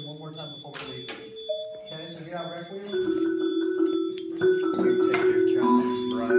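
Indistinct talking, then, about halfway through, held notes from mallet percussion instruments begin, several pitches overlapping and getting louder.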